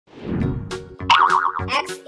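Background music with a regular beat, with a warbling, wobbling cartoon sound effect about a second in as the letter pops onto the screen.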